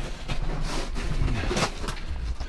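Scuffing and crunching of footsteps moving over loose dirt and broken rock, with a few sharp crunches in the second half over a low rumble of handling noise.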